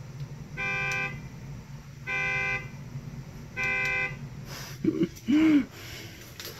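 A car horn honks three times, short even blasts of about half a second each, some 1.5 seconds apart. Two brief vocal sounds follow near the end.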